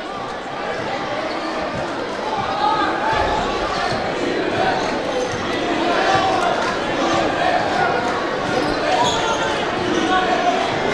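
Basketball being dribbled on a hardwood gym floor, over the steady chatter and calls of a crowd and players in a large gymnasium.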